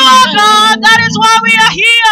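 Women singing a worship song into microphones over a PA, with a lead voice carrying the melody. The last note slides down just before the end.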